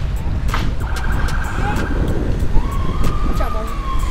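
Police siren wailing: a single tone that rises briefly about two and a half seconds in, then slowly falls in pitch, over a constant rumble of wind on a moving bike-mounted microphone.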